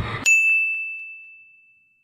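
A single high, bell-like ding sound effect about a quarter second in, ringing on one pitch and fading away over about a second and a half.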